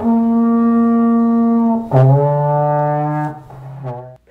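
Alto horn playing one long held note, then a lower note from about two seconds in that fades out near the end.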